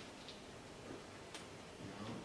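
A couple of faint, brief flicks of thin Bible pages being turned while searching for a passage, over quiet room tone.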